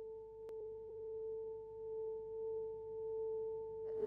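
A steady pure tone, with a fainter tone an octave above it, gently swelling and fading about once a second. A faint click comes about half a second in.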